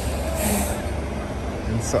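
Street traffic dominated by a New York City transit bus's engine rumbling steadily as it pulls away, with a brief hiss about half a second in.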